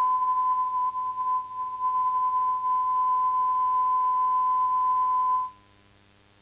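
Steady 1 kHz sine test tone that dips in level a few times between about one and two seconds in. It cuts off suddenly about half a second before the end, leaving faint hiss.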